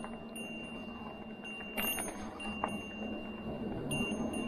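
Dual-motor fat-tyre e-bike's front and rear electric drive motors working under load up a steep climb in pedal assist four: a steady high whine over a low hum, with a couple of light clicks near the middle.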